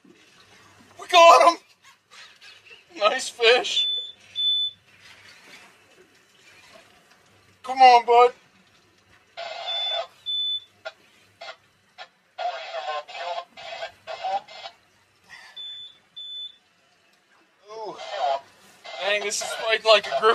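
A man's short wordless exclamations and grunts while fighting a hooked fish on a hard-bent rod, with spells of scratchy, clicking reel noise in the second half as he winds. Short, high electronic beeps sound a few times, some in pairs.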